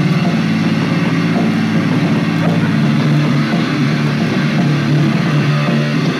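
Punk rock band playing live: loud distorted guitar and bass holding a steady, droning wall of sound.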